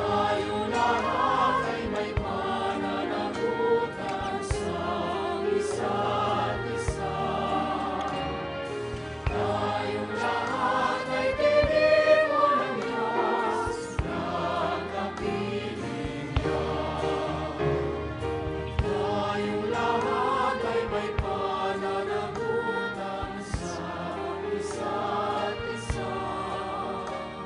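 Mixed choir of men and women singing a worship song through microphones, with instrumental accompaniment underneath.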